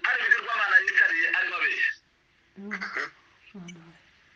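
Speech only: a voice talking for about two seconds, then a short silent pause and two brief bits of speech.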